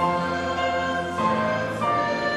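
A church congregation singing a hymn together in long held chords, with a new phrase starting at the outset and the chord changing about a second in and again near the end.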